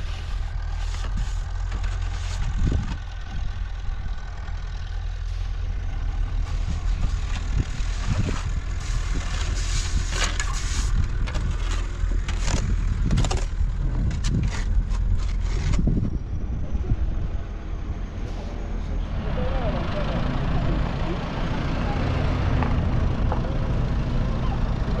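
A heavy machine's engine running steadily, with a string of sharp knocks and scrapes over it that stop about two-thirds of the way through.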